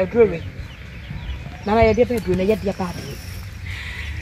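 Speech only: voices talking in two short phrases, one with a sharp rising exclamation, over a steady low background noise.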